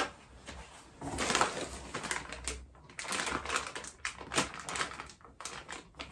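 Plastic packaging bags crinkling and rustling as they are handled and rummaged through inside a cardboard box, in irregular crackly bursts.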